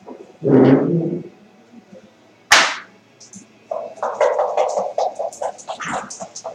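Backgammon play at the board: a brief muffled rustle just before a second in, a single sharp knock about two and a half seconds in, then a rapid run of clicks and rattles from about four seconds in, like dice shaken in a cup and checkers clacking.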